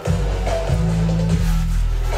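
Music with a heavy bass line, coming in suddenly and loud.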